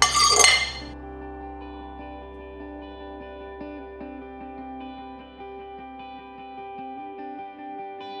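A fork scraping and clinking against a ceramic plate for about the first second, then soft background guitar music with steady plucked notes.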